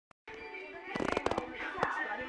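A quick cluster of about six sharp cracks or clicks about a second in, then one more near the end, over a steady background of music.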